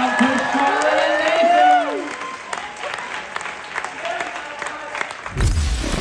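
Audience clapping and cheering as the song's last sung word fades out over the first two seconds. A low rumble comes in near the end.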